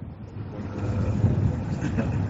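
Low, steady background rumble under faint voices, during a pause in a man's speech.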